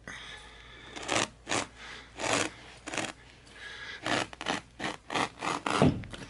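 Carpet knife slicing through carpet, a series of short rasping strokes that come faster, several a second, in the second half.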